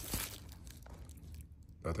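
Bubble-wrap packaging crinkling as it is handled, with a couple of light clicks at the start, fading away after about a second.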